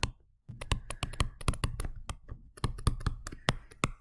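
A pen or stylus tapping and clicking on a tablet screen while handwriting a word, in rapid, irregular clicks.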